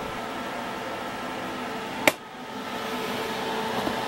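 Cooling fan of a Hitbox Multimig 200 Syn inverter MIG welder running with a steady hum, with one sharp click about two seconds in.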